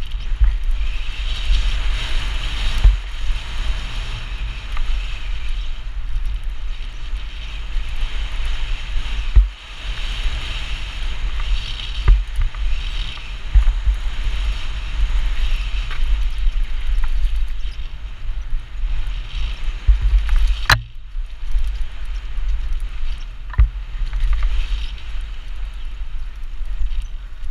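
Wind buffeting a helmet-mounted action camera's microphone over the rolling noise of a mountain bike's knobbly tyres on a dry dirt trail, with scattered knocks and rattles from the bike over bumps. A sharp clack about four fifths of the way through is the loudest.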